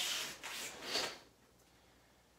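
Rustling and swishing of a karate gi and bare feet moving on the floor mats as a karateka steps back out of a punch, lasting just over a second.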